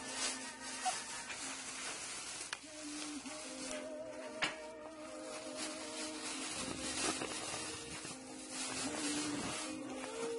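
Thin plastic bag crinkling and rustling as it is handled, in irregular crackles, with music playing quietly in the background.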